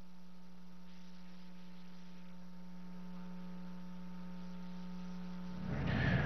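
Steady electrical mains hum: one low buzzing tone with a ladder of fainter higher overtones, holding level and cutting off just before the end.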